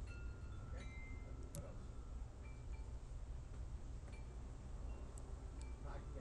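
Faint, scattered short high ringing tones at several different pitches, chime-like, over a steady low hum.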